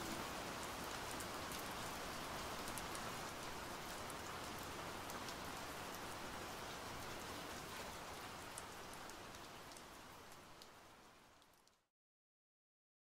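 Soft rain falling, an even hiss with scattered drops ticking, slowly getting quieter and then fading out to silence just before the end.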